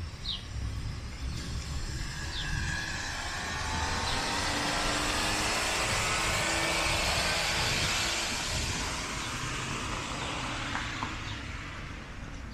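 A motor vehicle passing on the street: tyre and engine noise swells to a peak about six seconds in and then fades away. A bird chirps a couple of times near the start.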